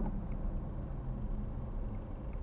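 Steady low rumble of a car's engine and tyres on a wet road, heard from inside the cabin while driving.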